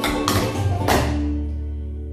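Clog shoe taps struck on the floor over the dance's recorded song: a few sharp taps in the first second, then the song's last chord held and slowly fading.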